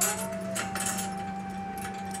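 Light metallic clinks and rustles from the wire cage being handled, over a steady background hum and a held steady tone that steps up in pitch about half a second in.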